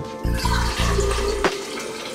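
Water running at a kitchen sink, a steady rushing hiss that eases off near the end, over background music.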